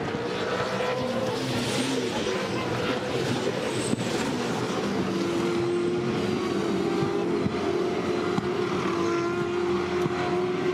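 Several V8 Supercar race cars running at racing speed, their V8 engine notes rising and falling through the first half, then one steadier engine note held from about halfway.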